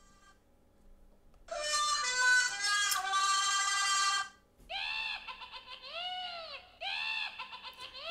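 Halloween witch sound effect: a high, shrill cackling voice for about three seconds, then a string of rising-and-falling wails.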